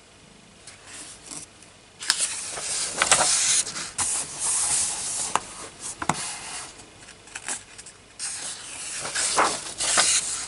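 Hand rubbing across the paper pages of a colouring book and turning a page: dry paper rustling that starts about two seconds in, with a few sharper crinkles along the way.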